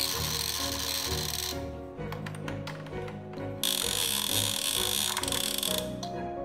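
Plastic baby activity cube toy, its turning parts giving a rapid ratcheting rattle twice: for about a second and a half at the start, then again from about three and a half seconds in until just before the end. A simple tune plays throughout.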